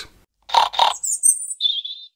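Birds chirping in high, warbling phrases, starting about a second in. Two short, soft noisy sounds come just before them.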